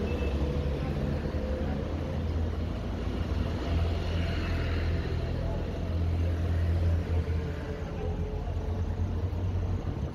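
Steady low rumble of road traffic around a concrete overpass, with a louder swell about four to five seconds in as a vehicle passes.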